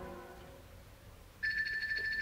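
An orchestral string chord dies away, then about a second and a half in a telephone ring starts: a steady, high, rapidly pulsing ring.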